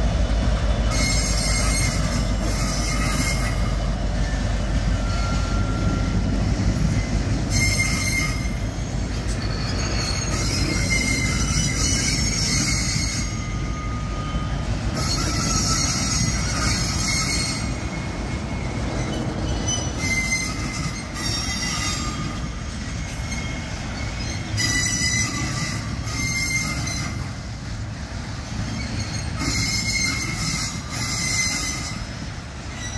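Freight train of hopper wagons rolling past on steel rails: a steady low rumble of wheels on track, heaviest in the first couple of seconds as the diesel locomotives pull away. High-pitched metallic wheel squeals come and go every few seconds over the rumble.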